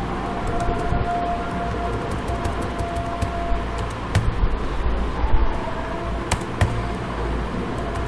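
Steady background noise with a thin held tone through the first few seconds, and a few separate sharp clicks from computer keys as code is edited.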